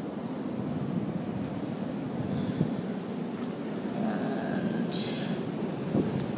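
Steady rumble of ocean surf mixed with wind buffeting the microphone, with a brief hiss about five seconds in.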